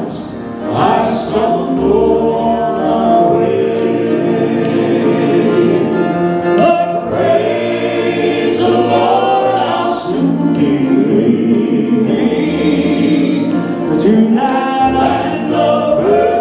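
Male southern gospel quartet singing in four-part harmony through microphones, loud and sustained.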